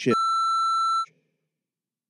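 Censor bleep: one steady high-pitched beep tone lasting about a second, masking a spoken swear word, cutting off abruptly.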